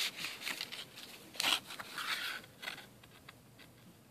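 Paper rustling and scraping as a small card is slid out of a paper pocket in a handmade paper journal. It comes in several short bursts over the first three seconds, the loudest about one and a half seconds in, then a few light ticks.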